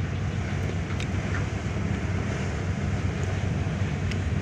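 Steady low drone of a passing cargo ship's engine.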